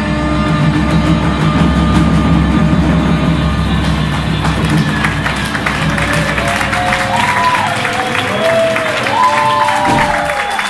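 A live band's final electric-guitar chord ringing out and fading after about seven seconds, while audience applause and cheering build, with whoops in the second half.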